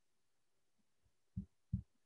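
Near silence, broken about a second and a half in by two short, soft, low thumps close together.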